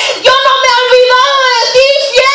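A woman singing loudly into a handheld microphone: high, held notes with a slight waver, a new phrase starting every half second or so.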